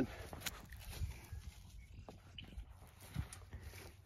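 Small electric garden cultivator churning soil: a low steady hum under a patter of small irregular knocks from the tines and thrown dirt clods.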